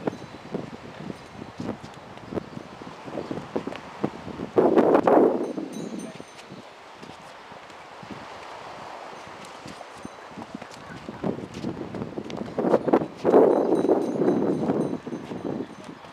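Sneakers shuffling and scuffing on a concrete walkway and hands slapping arms during light sparring: a run of short knocks and slaps. Two louder, longer swells of noise come in, about five seconds in and again about thirteen seconds in.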